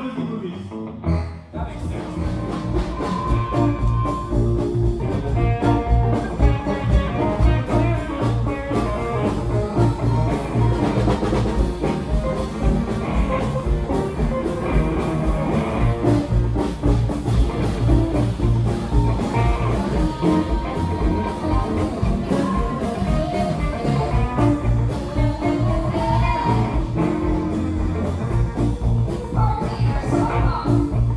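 Live band playing a rockabilly number, with guitars, drums and a woman singing. After a few scattered notes, the full band comes in about a second and a half in and keeps a steady beat.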